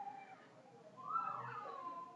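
Two faint, drawn-out pitched calls in the background, the second rising and then falling in pitch. They are well below the level of the narrating voice.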